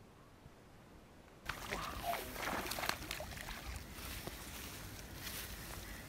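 Water splashing and churning as a hooked peacock bass thrashes at the surface, starting suddenly about a second and a half in, loudest for the next second or so, then going on more lightly.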